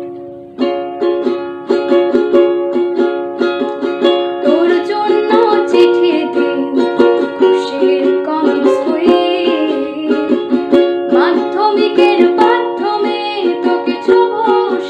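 A ukulele strummed in a steady rhythm, and a woman's voice begins singing a Bengali song over it about four seconds in.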